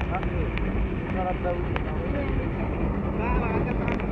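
Motorcycle engine running steadily at road speed with a constant hum, under heavy wind rumble on the microphone.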